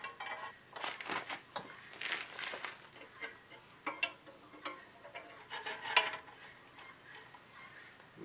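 Irregular metal clinks and taps of a wrench and hand tools working the bolts of a steel over-the-tire skid steer track, with the sharpest clink about six seconds in.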